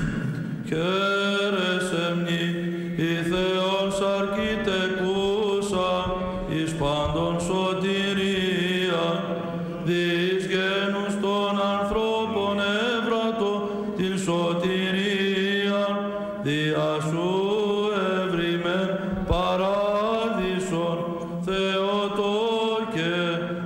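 Men singing Byzantine chant from an Orthodox memorial service: a melismatic sung melody that winds and glides over a steady held low note, the ison drone.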